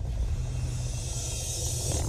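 A steady deep rumble with a hiss over it, mixed with music.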